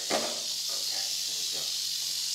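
Rattlesnake rattling its tail, a steady high buzz that does not let up, as it is pinned behind the head and held for venom extraction: a defensive warning.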